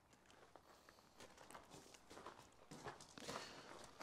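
Near silence, with faint scuffing footsteps and small handling sounds from about a second in.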